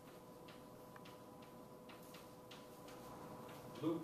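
Chalk tapping and scratching on a blackboard while writing, heard as faint irregular clicks several times a second, over a steady faint hum.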